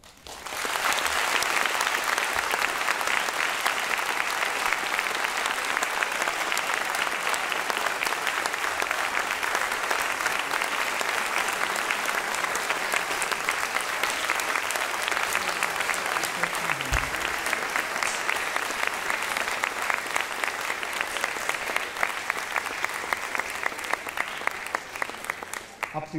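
Large audience applauding steadily, starting all at once and thinning into separate single claps near the end. A brief low thump sounds about two-thirds of the way through.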